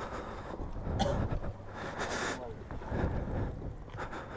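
Faint voices and rustling handling noise on the microphone over a low, steady background rumble.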